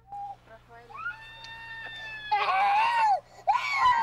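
A small child crying while held still and given drops by mouth: a long, steady wail, then two louder cries that rise and fall in pitch.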